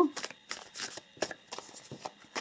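A tarot deck being shuffled by hand: cards slapping and sliding against each other in a string of quick, irregular clicks.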